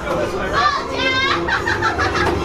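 A high-pitched voice cries out once about a second in, a shrill held note of about a third of a second, among other short bits of voice.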